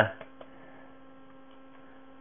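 Steady electrical hum from the recording chain, one low tone with fainter overtones, with two faint clicks a few tenths of a second in.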